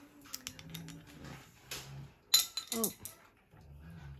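A dog vocalizing in the background, with one sharp, loud bark a little past two seconds in, and faint clicks of handling before it.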